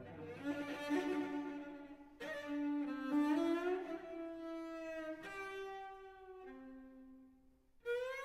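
Solo cello playing a series of sustained bowed notes, with upward pitch slides in the middle. The last, lower note fades away near the end.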